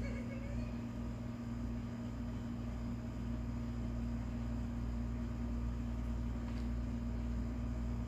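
A steady low hum over faint even background noise, with no distinct events.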